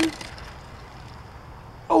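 Faint, steady rolling of a die-cast toy car's small wheels as it is pushed slowly by hand along the track.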